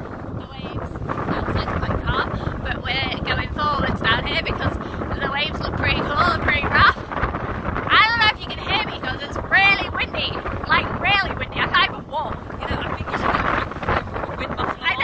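Strong wind buffeting the phone's microphone in a continuous low rumble, with a woman's voice talking and laughing over it.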